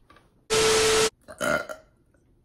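About half a second in, a loud burst of hissing, static-like noise with a steady hum under it lasts about half a second and cuts off sharply. It is followed by a short burp from a person.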